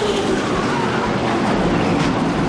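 NASCAR stock car engines running at racing speed in broadcast track audio, a steady wash of engine noise. One engine note slides down in pitch in the first half-second as a car goes by.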